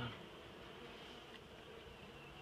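Honeybees buzzing steadily and faintly from an opened hive colony.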